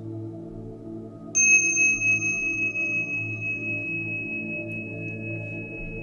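Soft ambient meditation music tuned to 432 Hz, a steady low drone, with one high metallic bell-like tone struck about a second in that rings on and slowly fades.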